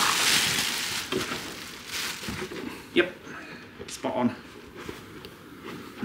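Plastic air-cushion packing rustling and crinkling as it is pulled out of a cardboard box. It is loudest at the start and dies away within the first couple of seconds, followed by a few scattered short handling knocks.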